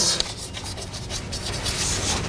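Chalk writing on a blackboard: a run of scratchy chalk strokes as a word is written out, strongest near the start and near the end.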